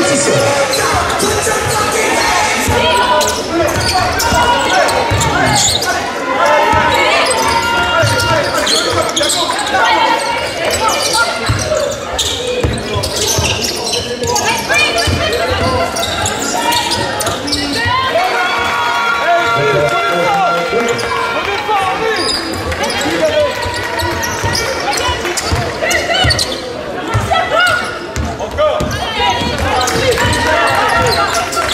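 Basketball bouncing on a hardwood court during live play, with voices of players and spectators in a large sports hall.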